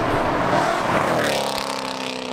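A car driving at speed: an even rushing sound at first, then a steady engine note from about a second in.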